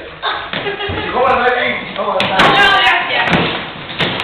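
Several voices shouting and calling out during rough play, with a few knocks and thumps of bodies and feet on a wooden floor, the sharpest about two seconds in.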